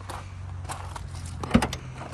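Mercedes-Benz GLK350's six-cylinder engine idling with a steady low hum, heard from behind the car, under a few short crunches on gravel and one sharp knock about one and a half seconds in.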